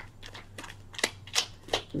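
A few sharp clicks and snaps from a deck of oracle cards being handled, strongest in the second half at about three a second.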